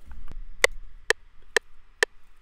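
A few short snare hits from a drum-kit sample in FL Studio, sounding one at a time about half a second apart as steps are clicked in for a fill.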